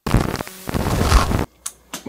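Faulty microphone cutting back in after a dropout: a loud crackling rumble of mic noise that stops abruptly about a second and a half in, followed by a couple of faint clicks.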